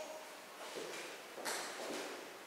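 Faint steps and scuffs of a dancer's heeled shoes on a hard floor, with the sharpest one about a second and a half in.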